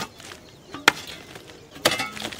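Short-handled hoe chopping into packed, clumpy earth to dig soil: three sharp strikes about a second apart.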